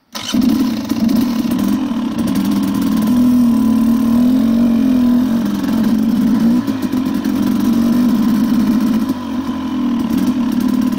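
KTM dirt bike engine running under way on a trail, its revs rising and falling a few times in the middle, then easing briefly near the end.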